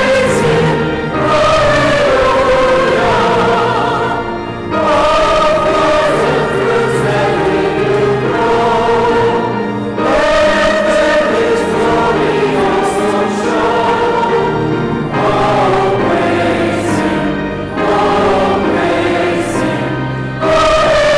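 Choir singing in phrases a few seconds long, with brief pauses between them.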